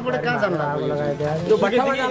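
Men talking, with one man's voice held on a long, drawn-out vowel through the middle.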